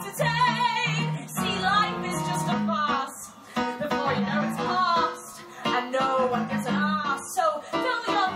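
A woman singing a cabaret show tune with a wide vibrato on held notes, accompanied by a keyboard piano.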